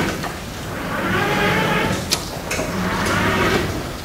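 Writing on a lecture board: two scratchy strokes of about a second each, with short taps between them.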